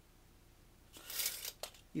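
Steel tape measure retracting: a brief rasp about a second in as the blade runs back into the case, then a sharp click as it snaps home.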